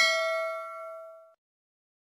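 Notification-bell 'ding' sound effect of a subscribe-button animation, marking the bell icon being switched on: one bright ring with several clear pitches, fading out about a second and a quarter in.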